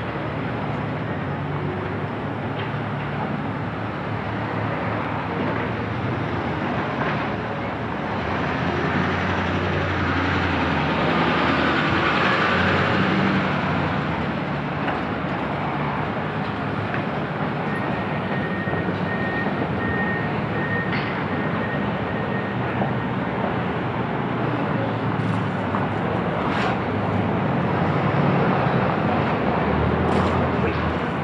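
Road traffic on a street: cars and trucks driving past at low speed, with the loudest pass-by swelling about ten seconds in. A faint high tone sounds in short pieces for a few seconds past the middle.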